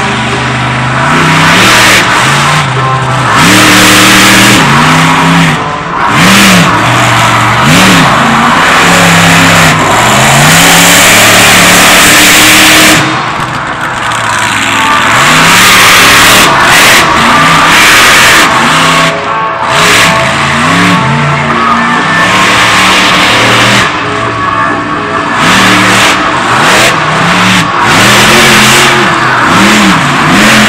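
Illuminator monster truck's engine revving hard over and over, its pitch swooping up and down about once a second as the throttle is worked. Very loud.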